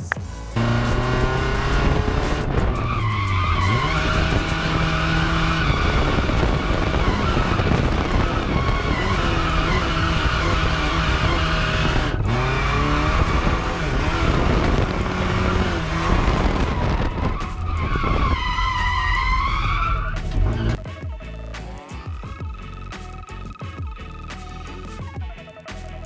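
Nissan S13 drift car's engine at high revs while drifting with tyres squealing. The revs dip and surge several times, as from clutch kicks to regain wheel speed, with a sharp rev rise near the end of the run. The car then settles to a lower, quieter note for the last few seconds.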